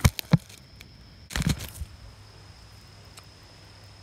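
Handling noise from a camera being picked up: two sharp knocks against the microphone in the first half-second, then a brief scrape about a second and a half in.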